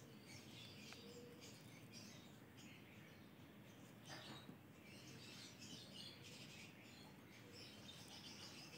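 Near silence, with faint bird chirping in the background.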